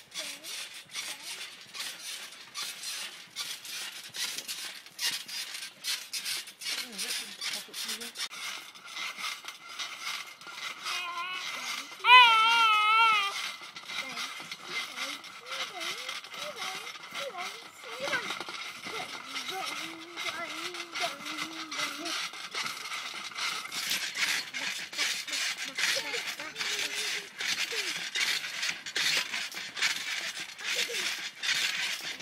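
Toddlers babbling and squealing while being bounced on a trampoline, over a constant run of small clicks and knocks from the trampoline. About twelve seconds in comes a loud, high, wavering squeal lasting just over a second.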